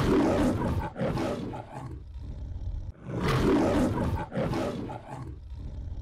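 Lion roar sound effect of an MGM-style logo ident: two roars about three seconds apart, each trailing off in shorter grunts.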